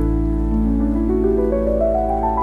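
Solo piano playing a slow rising arpeggio, one note after another, over a low bass note struck at the start. A recorded rain sound runs underneath.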